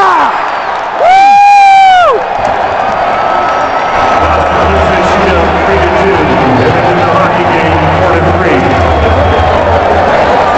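A fan close to the microphone lets out a loud, high whoop lasting about a second, starting a second in, as the winning shootout goal is celebrated. Arena crowd noise follows, and from about four seconds in, music with a deep, steady bass beat plays over the arena's sound system.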